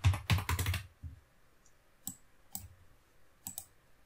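Computer keyboard typing: a quick run of several keystrokes in the first second, then a few separate single clicks spaced out over the remaining seconds.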